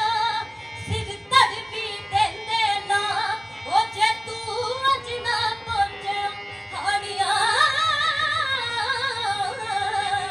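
A woman sings a Punjabi folk song (lok geet) solo into a microphone. The first half is quick gliding ornaments, and from about halfway she holds notes with wide vibrato.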